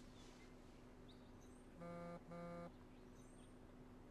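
Two identical short electronic beeps, about half a second apart, over near silence: the signal that the phone has begun charging in the wireless charging tray.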